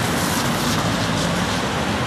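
Cars passing close by on a street: a pickup truck and then a car driving past, a loud steady rush of engine and tyre noise.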